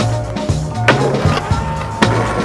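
Skateboard wheels rolling on asphalt, with one sharp clack of the board about a second in, over music with a steady beat.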